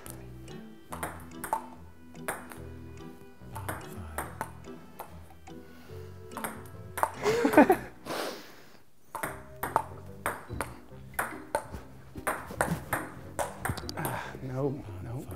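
Table tennis rally: the ball clicking off the paddles and the table at a quick, uneven pace, over background music. A short rising shout about seven seconds in, and a brief lull just before the clicks start again.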